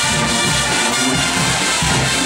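Guggenmusik brass band playing loudly and steadily: massed trumpets, trombones and sousaphones over drums.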